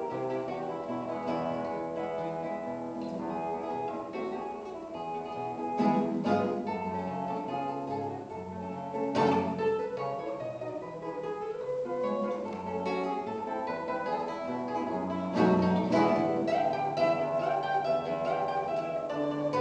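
Solo classical guitar played fingerstyle: a steady flow of plucked notes and chords, with louder chords struck about six, nine and fifteen seconds in.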